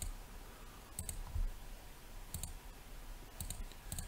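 Several sharp computer mouse clicks, about a second apart, over quiet room tone, with a soft low thump about one and a half seconds in.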